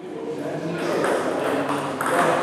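Sound of a table tennis hall fading in: background voices and the sharp clicks of celluloid balls hit on bats and bouncing on tables, with the echo of a large hall.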